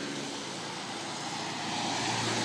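Passing road traffic: cars driving up the road close by, a steady rush of engine and tyre noise that grows a little louder toward the end as a vehicle approaches.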